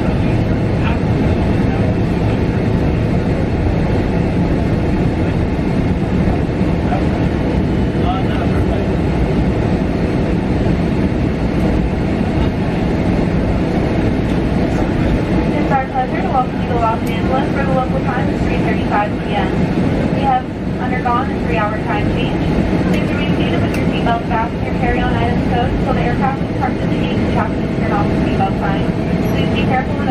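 Cabin noise of a Boeing 777 on its landing rollout: a loud, steady rumble of the GE90 engines and the wheels on the runway, the thrust reversers deployed at first and stowed by about halfway. From about halfway, voices talk over the rumble.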